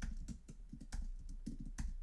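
Typing on a computer keyboard: a quick, uneven run of keystroke clicks as a short name is entered into a text field.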